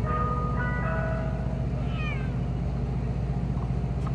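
Mister Softee ice cream truck running with a steady low drone, with a few chime-like musical notes changing pitch in the first second or so. A short falling squeal comes about halfway through.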